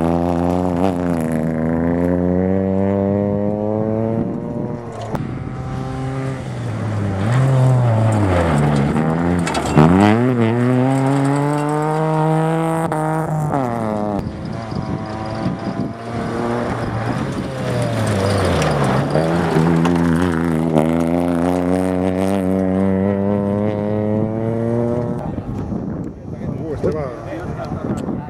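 Peugeot 107 rally car's engine at full throttle on gravel, its pitch climbing steeply through each gear and dropping at every shift or lift, over and over. It fades and swells as the car passes and comes round again.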